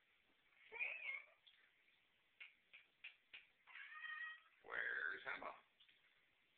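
Calico cat meowing three times: a short meow about a second in, a longer call around four seconds, and the loudest, drawn-out meow near the end. A few short clicks come between the first two.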